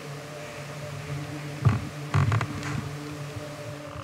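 A steady low electrical hum, with a couple of brief faint noises about halfway through.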